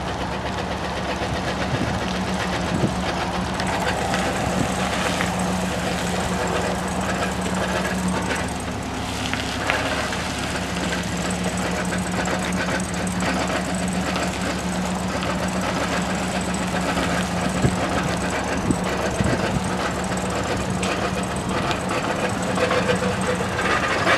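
2011 Chevrolet Silverado 2500HD's 6.0-litre gas V8 idling steadily.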